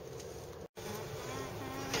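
A faint, steady low hum, cut off by a brief moment of complete silence about two-thirds of a second in, then carrying on.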